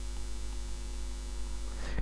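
Steady low electrical hum with a faint hiss: the background noise of the recording heard in a pause between words.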